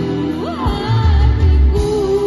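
Live rock band playing: a girl singing into a microphone over electric guitars, bass, drums and keyboard. About half a second in, her voice slides up into a held note, with deep bass notes and drum hits underneath.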